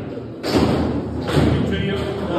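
Foosball table in play: two sharp knocks about a second apart as the hard ball is struck by the rod figures and hits the table.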